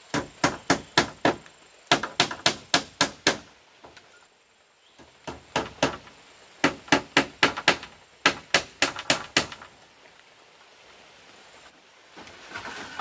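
A hammer striking bamboo as split-bamboo wall slats are fixed to a bamboo crossbeam. The blows come in quick runs of five to eight, about four a second, with short pauses between runs.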